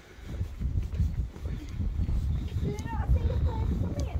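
Wind buffeting the microphone: a gusty low rumble, with a faint voice briefly heard about three seconds in.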